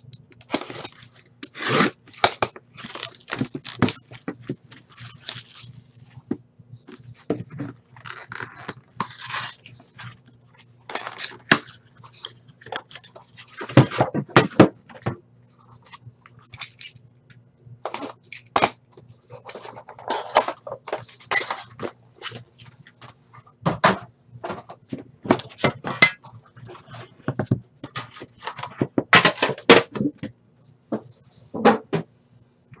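Shrink wrap being slit with a box cutter and torn off a trading-card box: irregular crinkling, tearing and sharp clicks, with scrapes and knocks of a metal tin being handled. A steady low hum sits underneath.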